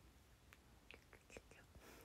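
Near silence with faint mouth sounds from a young woman close to the microphone: a few soft lip and tongue clicks, then a short breathy whisper near the end.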